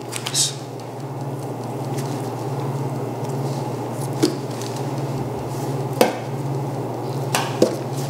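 Knife trimming silver skin from a sirloin tip of venison on a stainless steel table: soft cutting with a few sharp clicks of the blade or trimmings against the steel. A steady low hum runs underneath.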